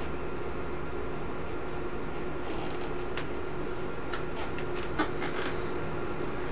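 Steady room hum with a few light clicks and knocks as a stretched canvas is handled and set on a wooden easel, the sharpest knock about five seconds in.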